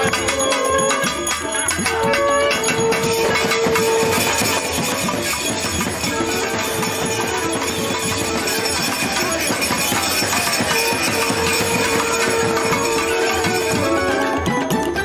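Traditional Bengali festive music: a fast, dense beat of drums and percussion with a struck bell-metal gong (kansar), over which a long held note sounds several times, each lasting about two seconds.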